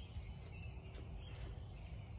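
Quiet outdoor ambience: a low steady rumble with a few faint bird chirps.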